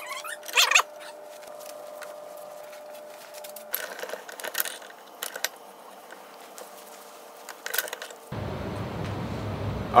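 Scattered light metallic clicks and knocks from a steel bench vise as needle bearings are pressed into a machined aluminum linkage plate, over a faint steady hum.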